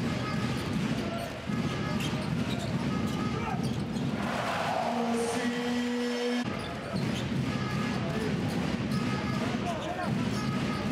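Arena sound of a basketball game: a ball dribbling on the court over steady crowd noise. About halfway through, the game sound drops away for a couple of seconds, with a brief rush of noise and then a steady low tone lasting about a second and a half.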